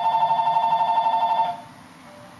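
Whiteboard marker squeaking on the board through one long stroke: a steady squeal with a rapid flutter that stops about a second and a half in.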